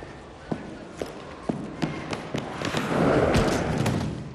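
A few sharp knocks and taps, roughly one every half second, then a louder swell of noise about three seconds in that dies away near the end.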